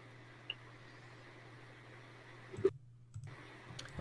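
Quiet room tone with a few faint clicks, the loudest a little past halfway.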